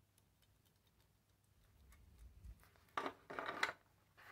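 Hands handling the plastic parts of a disassembled power folding mirror: faint light clicks, then a brief, louder scraping and rattling of plastic about three seconds in as the mechanism is fitted into the mirror housing.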